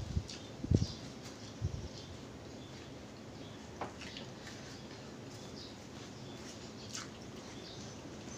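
Close-miked eating sounds: a mouth chewing food, with a few soft low thumps in the first two seconds and then scattered small clicks and faint crackles as fingers pick through rice and fried fish.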